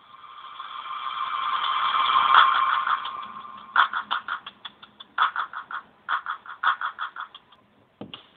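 Telephone line noise during a call transfer: a hissing rush that swells for about two and a half seconds and then fades, followed by a run of short, choppy crackles.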